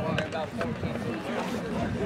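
People talking, several voices at once: spectator chatter.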